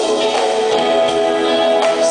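Live R&B band playing a slow groove, with electric guitar and keyboards holding sustained chords over drums.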